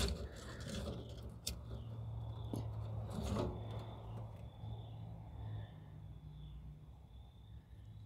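Faint clicks and rustles of a lighter being worked inside a barrel stove's firebox to light the kindling, over a low steady hum that weakens about six seconds in.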